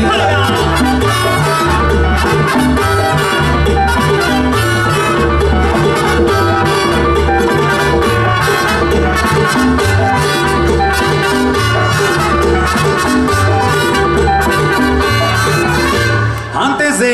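Live tropical dance band playing with a trumpet-led brass section over a steady, repeating bass line and percussion.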